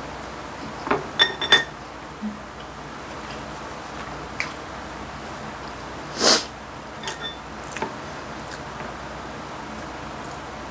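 Eating at the table: chopsticks clink against ceramic dishes several times with a short ringing, three quick clinks about a second in and a few lighter ones later. A short, breathy sniff or exhale about six seconds in is the loudest sound.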